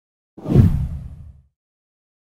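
A deep whoosh sound effect from an animated intro, swelling in about half a second in and fading out within about a second.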